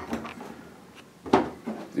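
Metal pump cover bracket being tipped over and handled on a tabletop: a sharp knock a little past halfway, with lighter clunks around it.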